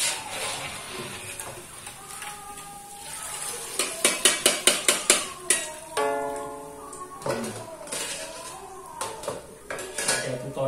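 A metal spatula and a perforated steel strainer scraping and clattering against a steel wok as fried peyek crackers are lifted out of hot oil. About four seconds in comes a quick run of some eight sharp metal taps, and about six seconds in a steady tone that lasts just over a second.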